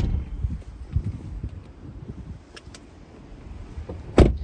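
Low rumble of handling noise and wind on a phone microphone, with a thump about a second in and a few faint ticks later, as the person filming moves out of the car.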